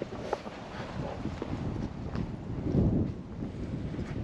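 Wind buffeting the camera microphone while walking, swelling into a stronger gust near the end.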